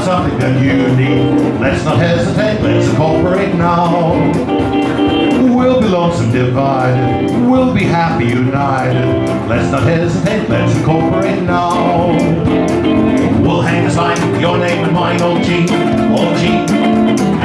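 Live old-time acoustic music, banjo and acoustic guitar playing a 1929 song at a steady level, with a wavering melodic line carried over the strumming.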